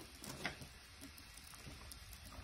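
Faint crackle and patter of dried herbs being crumbled by hand and sprinkled into a plastic bucket of milky liquid, with a few light clicks in the first half second.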